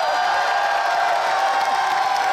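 A large crowd cheering and shouting, a steady mass of many voices at once.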